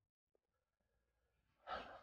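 Near silence: a pause in a man's speech, with a short, soft intake of breath near the end.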